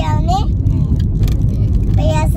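Steady low rumble of a car's road and engine noise inside the moving cabin, with a brief high-pitched voice calling out near the start.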